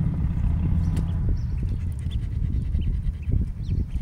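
A dog panting close by, over a steady low rumble.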